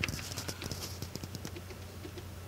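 Plastic buttons on a Digidesign Pro Control control surface clicking as they are pressed: a run of small, irregular clicks, the loudest right at the start, over a low steady hum.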